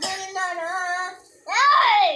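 A child's voice in a drawn-out, sing-song tone, then a loud high-pitched squeal that rises and falls about one and a half seconds in.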